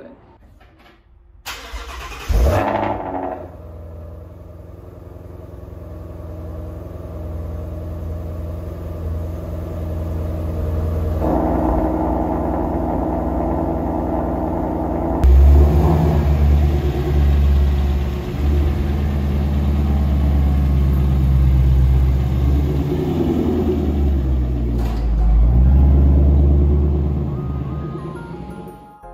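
Shelby GT350's 5.2-litre flat-plane-crank V8 starting with a brief loud flare about two seconds in, then idling. About fifteen seconds in the exhaust is switched to sport mode and the idle suddenly becomes much louder and deeper. It swells twice more near the end.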